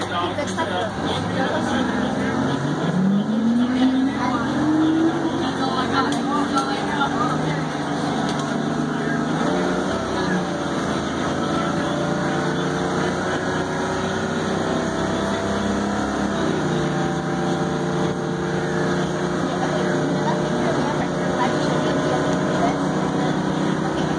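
Crown Supercoach Series 2 school bus engine heard from inside the passenger cabin, rising in pitch as the bus gathers speed over the first few seconds. It then runs on steadily, with a step in pitch about ten seconds in and again about sixteen seconds in.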